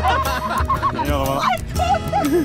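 A woman's excited, high-pitched squeals and whoops, wavering up and down, over background music.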